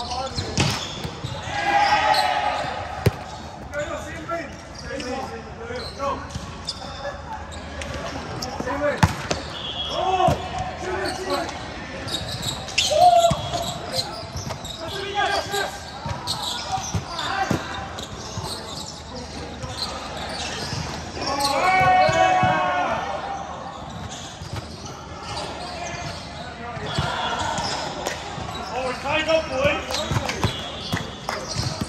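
Indoor volleyball play: a string of sharp ball impacts on hands and a hard court, mixed with players' raised voices and shouted calls, loudest about two seconds in and again around the 22-second mark.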